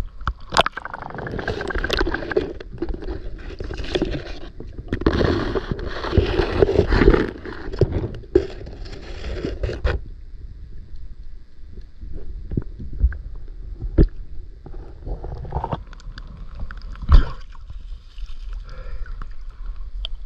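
Water sloshing and gurgling around a camera held at the surface of a shallow river. About halfway through the camera goes underwater and the sound turns muffled and dull, with scattered sharp clicks and knocks.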